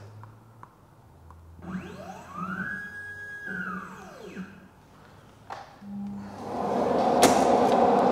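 Motorised positioning axis of a Blum MINIPRESS top drilling machine driving to a newly entered position: a whine that rises in pitch, holds, then falls away as the drive stops. A knock follows, then a rushing noise builds up and is the loudest sound near the end.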